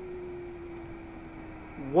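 A steady beat-note tone, the signal generator's 14 MHz carrier at three tenths of a microvolt as heard through the Softrock Ensemble II software defined receiver, over a faint receiver hiss. Its pitch slides slowly down as the just-started generator drifts.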